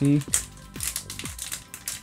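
Foil Pokémon booster-pack wrapper crinkling in quick, irregular crackles as hands work it open.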